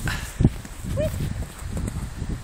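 Low, uneven rumble of wind and handling noise on a phone microphone, with dull hoofbeats of a horse cantering on grass. A short chirp comes about a second in.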